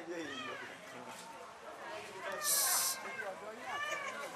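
High-pitched voices gliding up and down over background chatter. A short, loud hiss comes a little past halfway.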